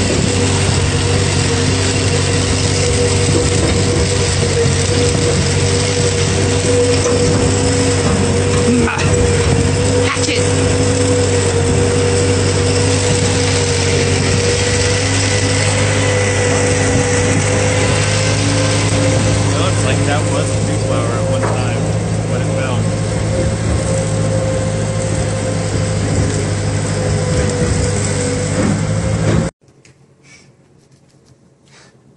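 Small farm tractor engine running steadily, heard up close from the trailer it is towing, with a few knocks along the way; it cuts off suddenly near the end.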